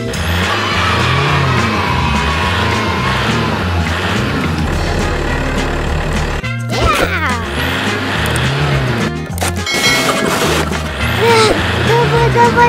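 Background music with a steady, repeating bass line, overlaid with a swooping sound effect about six and a half seconds in.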